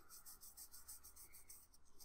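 Faint, even scrubbing of a skin-prep wipe rubbed over the forearm skin to clean the IV insertion site.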